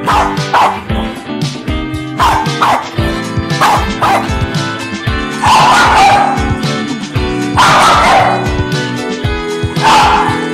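A pop song's backing track with dog barks and yips over it where a vocal would be: several short barks in the first half, then two longer, louder ones.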